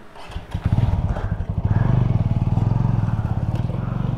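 A motorcycle engine close by comes in about half a second in and then runs at a steady idle with a rapid, even pulse.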